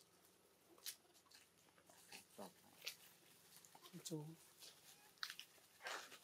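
Near silence with faint, scattered crackles of dry leaf litter as macaques move over it, and a brief soft human voice about four seconds in.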